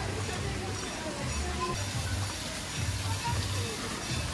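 Outdoor water-park ambience: faint distant voices and background music over an uneven low rumble, with no clear foreground sound.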